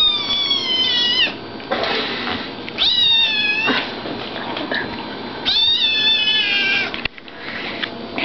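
Bengal kitten meowing three times, each call drawn out for about a second and falling slightly in pitch, with short noisy sounds between the calls.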